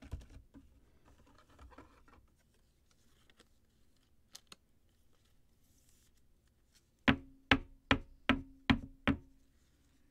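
A rigid clear plastic card case being handled and snapped shut around a card: faint handling first, then six sharp, hollow plastic clicks in quick succession about two-thirds of the way in.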